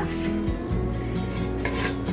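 Wooden spoon scraping a dried, stuck vegetable mixture off the inside of a stainless steel pot, a repeated rasping scrape over background music.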